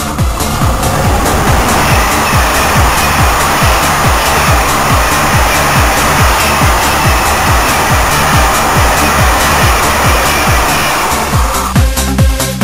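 A passenger train passing at speed on the line, a steady rushing noise that fades out just before the end, under electronic dance music with a steady beat.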